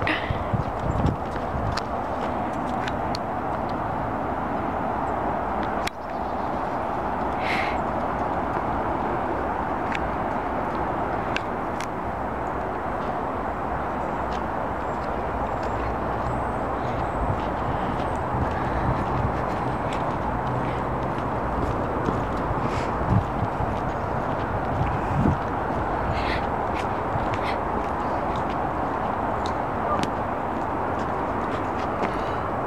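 Steady outdoor background noise with a few faint light taps scattered through it.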